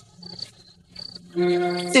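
Crickets chirping in short, faint, high bursts over a low steady hum, as night ambience.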